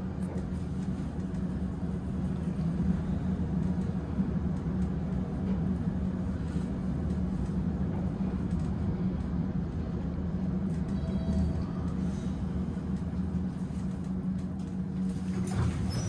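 Montgomery traction elevator car travelling down through the express zone: a steady low rumble of the moving car in the hoistway.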